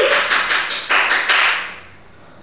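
A rapid run of light taps, fading out after about a second and a half.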